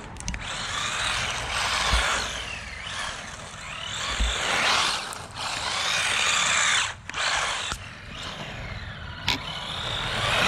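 Tamiya DF-03 Dark Impact electric 4WD RC buggy's motor and drivetrain whining, rising and falling in pitch as it speeds up and slows down several times.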